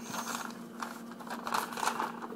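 A sheet of paper rustling and crinkling as it is handled, in a string of short, irregular crackles.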